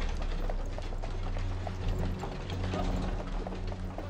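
Horse-drawn wooden cart rolling over paving: irregular clicking and clattering from the wheels and hooves over a low, steady rumble.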